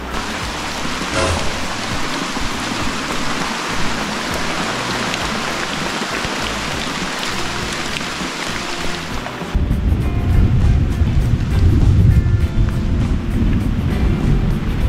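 Heavy rain pouring down, a loud, even hiss. About two-thirds of the way through it turns abruptly duller, with a strong low rumble underneath.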